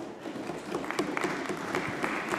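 Applause from members in a parliamentary chamber: many hands clapping together, starting suddenly as a speech ends and going on steadily.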